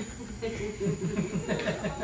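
A person's voice, low and untranscribed, running into a string of short, quickly repeated falling syllables about a second in.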